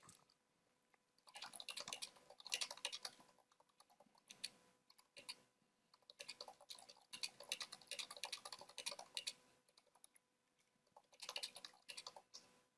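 Computer keyboard being typed on: runs of quick key clicks in bursts, with short pauses between them.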